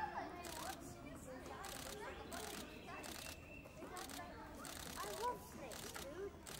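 Nikon D500 DSLR shutter clicking repeatedly in short runs close to the microphone, with the voices of a group of children chattering in the background.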